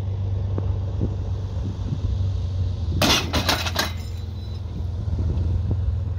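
Tow-hook load-test rig under heavy strap tension, with a steady low hum. About three seconds in comes a sudden clatter of sharp metallic clanks and clinks lasting just under a second, as the Schweizer tow hook lets go under load.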